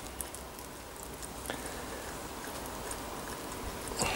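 Faint patter of methylated spirits dripping from a Trangia spirit burner shaken upside down to empty it, with a few small ticks and one light knock about a second and a half in.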